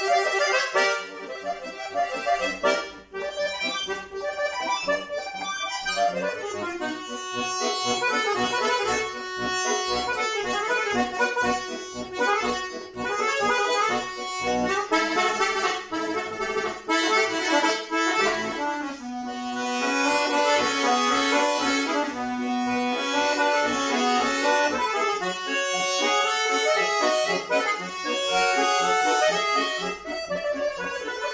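Solo bayan (Russian chromatic button accordion) playing a fast passage of quick melodic runs over a steady rhythm of short chord strokes. About two-thirds of the way through, a low note is held for several seconds under the moving upper line.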